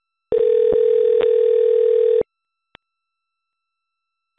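Telephone ringback tone on an outgoing call: one steady ring lasting about two seconds, with two clicks on the line during it and another faint click shortly after.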